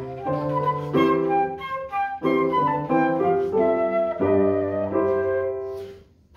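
Concert flute playing a melody of quick, changing notes over piano accompaniment with sustained low notes. The phrase tapers off and stops right at the end.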